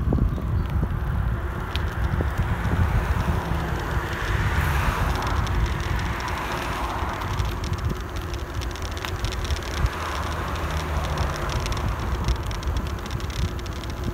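Wind rushing over the microphone and tyres rolling on asphalt as a bicycle towing a heavy trailer rides downhill, a steady noise throughout.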